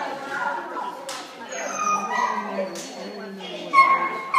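Dog yipping and whining in short high calls, with a louder yelp near the end.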